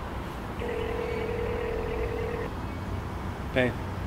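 A telephone ringback tone: one steady beep about two seconds long, starting about half a second in, over a low steady background rumble.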